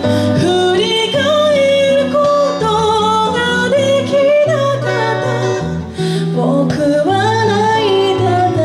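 A woman singing a melody into a microphone, with guitar accompaniment.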